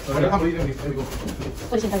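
A person's voice, talking or vocalising indistinctly, with the word "guys" near the end.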